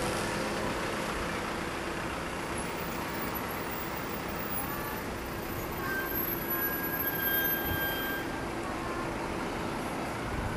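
Steady hum of road traffic, a continuous noisy drone with no distinct events.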